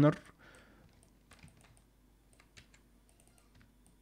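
Faint, irregular clicks of a computer keyboard and mouse being worked.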